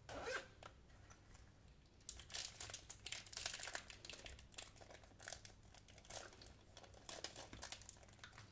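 A brief zip of the pencil case's zipper right at the start, then from about two seconds in, a thin clear plastic bag crackling and crinkling as it is handled and opened and the pens are drawn out of it.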